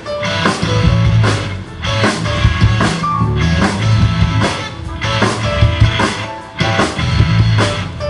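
Live pop-rock band playing an instrumental vamp, with no singing: a drum kit keeps a steady beat of about two hits a second over bass guitar, electric guitar and keyboard.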